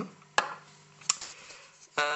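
Two sharp clicks, the first about half a second in and louder, the second a little after the middle. They come from small hard objects being handled, over faint room hiss.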